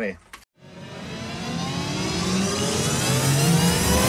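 Edited-in transition sound effect: a rising riser that starts about half a second in and climbs in pitch, growing steadily louder for over three seconds.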